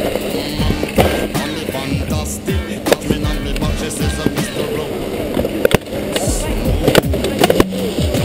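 A snowboard sliding and scraping over snow as the rider skates along with one foot strapped in, with sharp clicks and knocks from the board and bindings. Music plays underneath.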